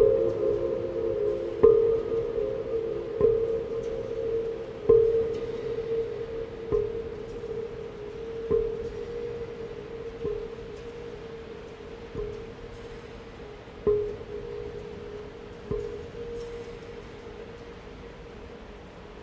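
Large earthenware jars struck one at a time in a slow, even pulse, about one stroke every second and a half to two seconds. Each stroke leaves a ringing tone of much the same pitch that hangs in the long reverberation of a steel-walled dome, and the strokes grow softer over the passage.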